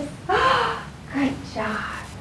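A woman's voice making two short breathy sounds without words, the first about a quarter second in and the second just after a second in.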